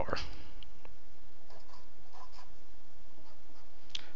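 Marker pen writing on a white board: a few faint scratchy strokes in the first half, over a steady low background hum.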